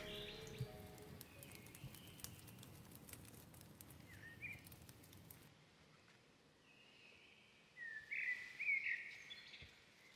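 Faint outdoor ambience with a few bird chirps: a short call about four and a half seconds in, then a brief gap of near silence and a cluster of louder chirps near the end.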